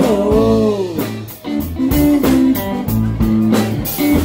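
Live band playing an instrumental stretch between sung lines: electric guitar, bass guitar and drum kit. A long falling note opens it, then a steady bass line under regular drum and cymbal hits.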